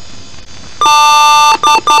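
Computer BIOS boot beep code, electronically altered so each beep sounds as several tones at once: one long beep about a second in, then two quick short beeps. It repeats the long-then-short pattern heard just before.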